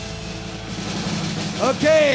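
Live rock concert recording between songs: steady amplifier hum and audience noise right after the band's final hit, with a man's voice over the PA starting to speak near the end.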